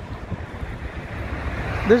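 Downtown street traffic: a car passing close on the roadway, its tyre and engine noise growing louder near the end, over a low rumble of wind on the microphone.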